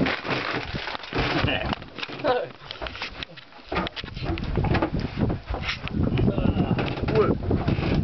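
Indistinct voices over steady wind rumble on the microphone, with scattered short knocks and clicks from handling as a fish is lifted out of a plastic ice box.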